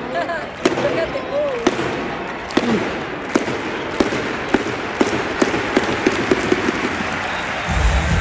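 A basketball bouncing on the hardwood court, settling into about two bounces a second in the second half, over the steady murmur and chatter of a large arena crowd. Loud arena music starts up again near the end.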